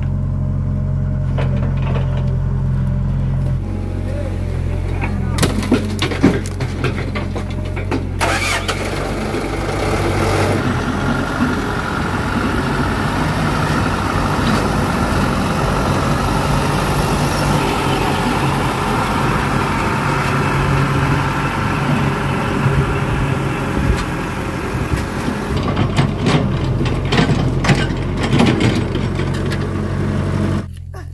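Diesel engines of a Komatsu mini excavator and a dump truck running steadily, with a few sharp knocks about five to eight seconds in. From about ten seconds in the engine sound grows denser and a little louder for some fifteen seconds.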